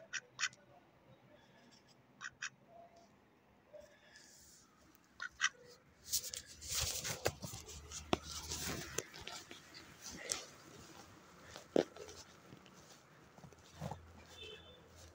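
Domestic ducks quacking in short double calls, three times in the first half. These are followed by several seconds of rustling noise and a single knock late on.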